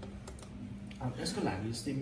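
A few quick keystrokes on a computer keyboard, clicking in the first half second, with a man talking from about a second in.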